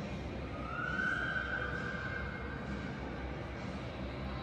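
Steady background hum of a large, near-empty indoor mall. A single thin, high tone lasting about two seconds enters about half a second in, rising slightly before it fades.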